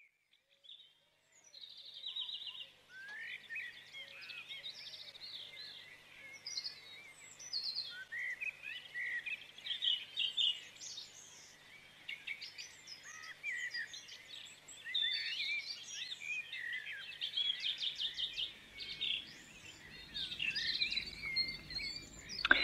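Birds singing in a dawn chorus: many overlapping short chirps and whistled phrases, beginning about a second and a half in, over a faint steady low hum.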